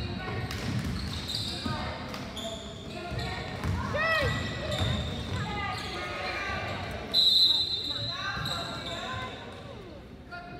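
Basketball game sounds on a gym court: voices calling out, sneakers squeaking and a ball bouncing. About seven seconds in, a referee's whistle blows once, short and shrill, stopping play.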